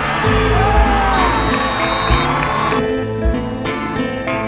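Background music with a steady beat, with crowd cheering mixed in beneath it.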